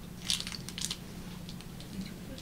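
A few short clicks and rustles of handling at a lectern, bunched in the first second, over a steady low electrical hum.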